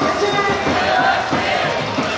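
A baseball batter's cheer song playing over the stadium loudspeakers, with the crowd chanting and singing along.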